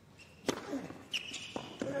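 Tennis ball struck hard with a racket on a serve about half a second in, followed about a second later by further sharp racket-on-ball hits as the point is played out. A brief high-pitched squeak comes with the second hit.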